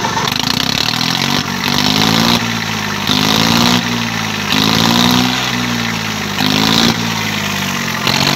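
Swaraj 744 FE tractor's three-cylinder diesel engine running through a New Holland silencer on a vertical exhaust stack, blipped up and let back down again and again, about every one and a half seconds.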